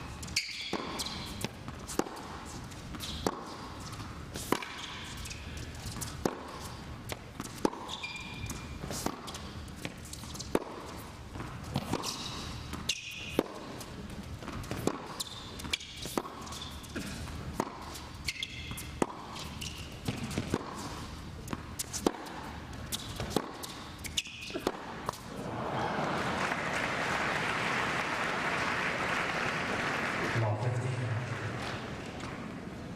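Tennis ball being struck back and forth in a long rally on an indoor hard court, sharp racket hits and bounces about once a second, with short high squeaks of shoes on the court between them. The rally ends about 25 seconds in and the crowd applauds steadily to the end.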